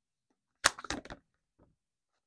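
Tarot cards being handled as the deck is cut: one sharp snap of cards about two thirds of a second in, followed by a few quick softer card clicks.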